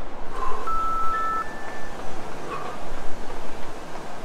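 Interval-timer beeps marking the start of a work period: two steady electronic tones, the second a little higher, overlapping about a second in. Under them runs a continuous rough noise from fast high-knee steps in place.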